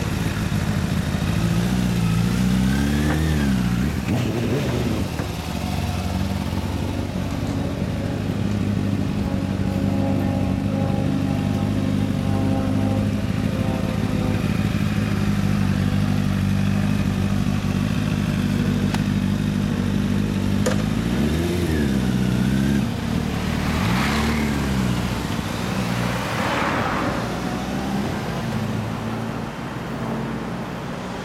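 Two motorcycles, a 2016 Kawasaki Z250 and a 2013 Honda CBR1000RR, idling steadily, with short throttle blips about three seconds in and again twice after twenty seconds. Near the end they pull away, with road traffic noise around them.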